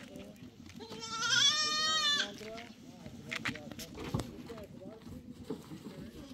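A goat bleating once, a long wavering call lasting about a second and a half.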